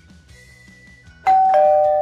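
A two-note ding-dong doorbell chime sound effect about a second in: a high note, then a lower one, both held and then cut off together, much louder than the quiet background music beneath.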